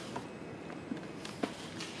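Quiet room tone with a few faint, soft taps spread through it.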